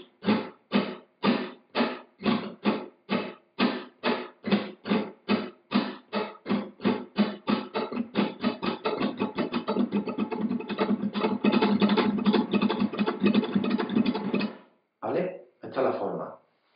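Flamenco guitar played with a four-finger rasgueado: little, ring, middle and index fingers flicking down across the strings one after another, then the index coming back up. The strums start out spaced apart and speed up into a near-continuous roll, which stops about a second before the end, followed by a couple of lone strums.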